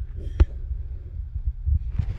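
Low rumbling and soft bumps of a handheld camera being moved and handled, with one sharp click about half a second in.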